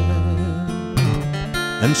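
Acoustic guitar accompaniment between sung lines: a chord rings and fades, then a new strum comes in about a second in.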